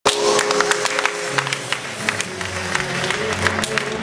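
Music with held tones and a bass line, over scattered hand claps and applause.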